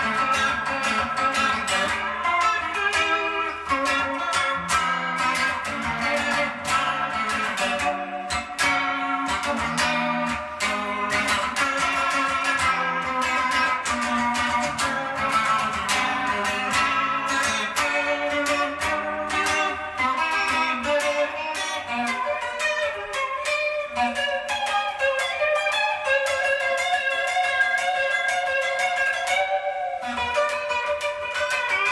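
Electric guitar played with a pick on its humbucker rhythm pickup, through a Line 6 Spider IV 15-watt amp: a steady, unbroken stream of picked notes and chords.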